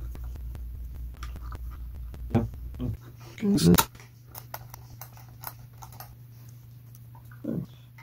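Light clicks and scrapes of small metal parts and an adjustable wrench as the knobs are pulled off a Telecaster's control plate and the potentiometer nuts are loosened. A low steady hum runs underneath and changes about three seconds in.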